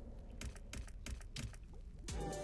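Quiet run of quick, light clicks from an online video slot's reels spinning and stopping one after another.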